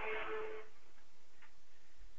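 Vacuum cleaner running in the background with a steady drone and hum. It cuts off suddenly under a second in, leaving only faint hiss.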